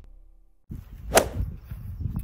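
Intro music fading out, a brief quiet gap, then outdoor background noise with one sharp, short sound a little over a second in.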